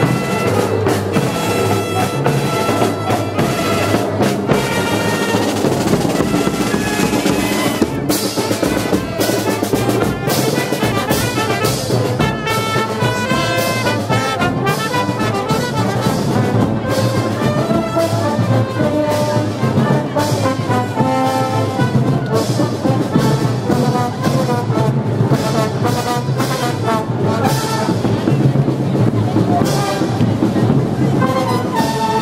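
A marching brass band playing a parade march: trombones, saxophones and other brass over drums, with frequent drum and percussion strikes.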